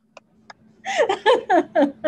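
A woman laughing over a Zoom call: a run of short 'ha-ha' bursts, about four a second, starting about a second in, after two faint clicks.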